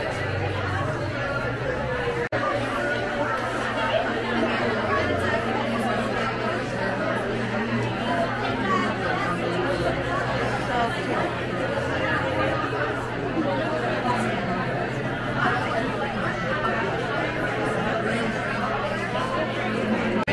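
Crowded bar room full of people chatting, many voices overlapping in a steady babble, with a steady low hum underneath and a brief dropout about two seconds in.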